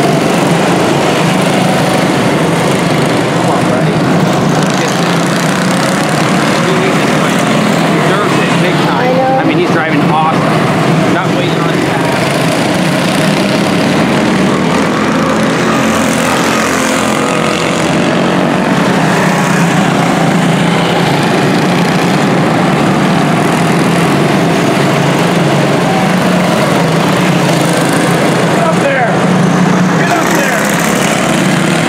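A pack of quarter midget race cars' small single-cylinder Honda 160 engines running together, a steady continuous buzz as the cars circle the track.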